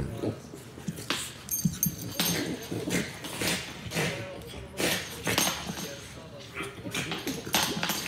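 Two French Bulldogs play-fighting: a string of short, irregular dog vocal noises and scuffling as they wrestle.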